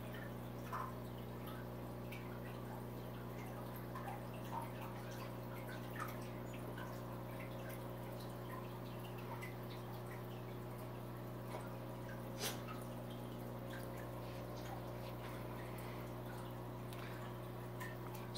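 Aquarium running: a steady low hum from its pump or filter, with scattered small drips and splashes of water at irregular moments.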